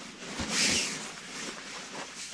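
Rustling and crinkling of a Taylormade silver quilted thermal windscreen cover being pulled out of its fabric storage bag, loudest about half a second in and then fading to a lighter rustle.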